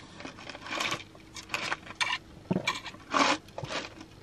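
Ice cubes clinking in a plastic cup of iced drink, with sips from the cup, in several short bursts.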